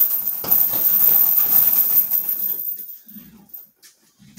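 A leg strike thudding into a heavy bag, followed by a second hit about half a second in. The bag's hanging chain rattles and rings as it swings, then fades out after about two and a half seconds.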